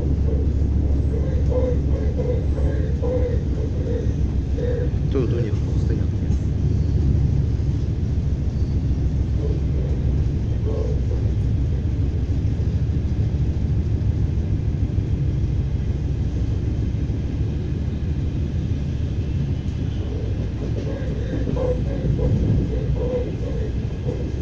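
Steady low rumble of an ES2G Lastochka electric train running, heard from inside the passenger car.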